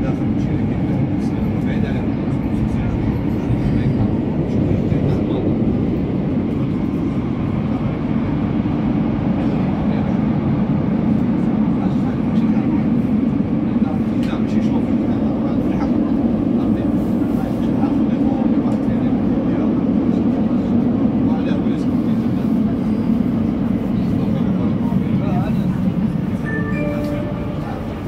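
Metro train running in a tunnel, heard from inside the carriage as a loud, steady low rumble of wheels and traction motors. Near the end the rumble eases and a few steady whining tones come in as the train slows into the next station.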